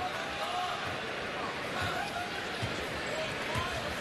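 A basketball being dribbled on a hardwood arena court, a few low bounces heard over the steady chatter of an arena crowd.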